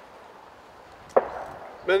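Faint steady background hiss, broken about a second in by a single sharp knock that dies away quickly; a man's voice starts near the end.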